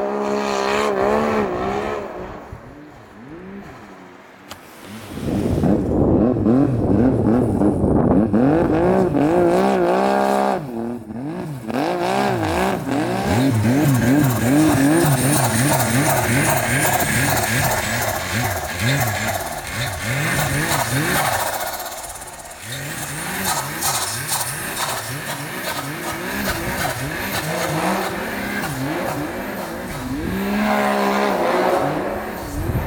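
Snowmobile engine revving hard in deep powder, its pitch rising and falling again and again as the throttle is worked. It runs quieter for a few seconds near the start, then loud for the rest, with a brief drop about two-thirds of the way in.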